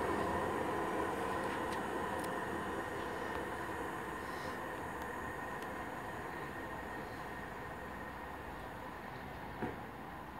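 Class 323 electric multiple unit running away from the station after departing, a steady train hum that fades gradually as it draws off into the distance.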